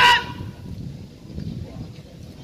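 A brief, loud, high-pitched vocal call, like a shout, cutting off about a quarter second in, followed by low outdoor background noise.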